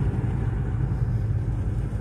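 Car driving along a paved road, heard from inside the cabin: a steady low rumble of engine and road noise.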